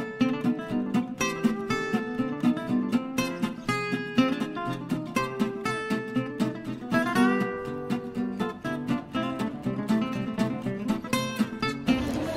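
Background music: an acoustic guitar picking a quick run of notes.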